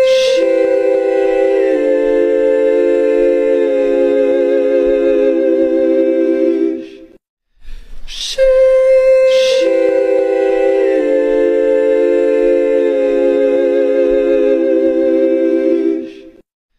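The 'heavenly sheesh' meme: voices sing a drawn-out 'sheesh' in layered a cappella harmony, with new notes stacking step by step into a held chord. The chord cuts off about seven seconds in, and after a short gap the same 'sheesh' starts again with its hissy 'sh' and builds the same way.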